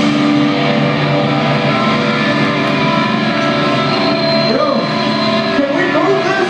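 Distorted electric guitars of a live hardcore band ringing out loud, holding sustained chords and feedback with no drums, as a song ends. Voices show through the ringing near the end.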